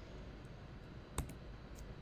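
A single sharp computer click about a second in, advancing a presentation slide, over a faint steady low hum of room noise.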